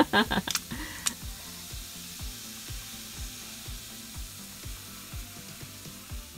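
Faint steady fizzing hiss from a fizz potion foaming in a plastic toy cauldron, under background music with a steady beat. A short laugh and two light clicks come in the first second.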